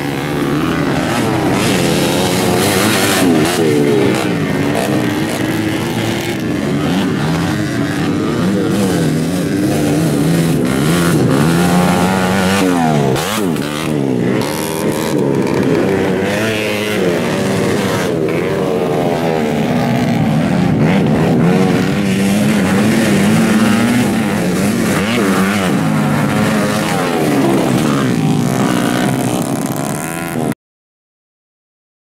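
Several small-displacement motocross bikes (modified two-stroke 116cc and four-stroke 125cc) racing, their engines overlapping and revving up and down in pitch as the riders open and shut the throttle over the jumps.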